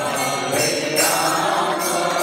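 Several voices chanting a mantra together over instrumental music.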